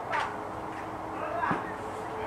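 Indistinct voices of people talking at a distance, with a short sharp sound about one and a half seconds in.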